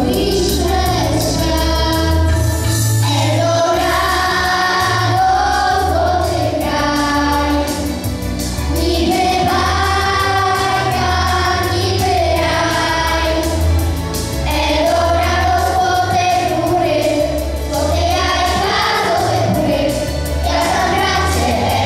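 Children's vocal group singing together into microphones over an instrumental accompaniment with a steady bass and beat.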